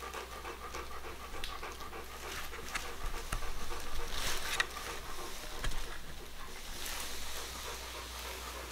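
A dog panting softly, with a few light clicks.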